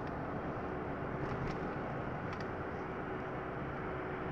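Steady road and engine noise of a moving car, heard inside the cabin, with a faint steady hum and a few light ticks.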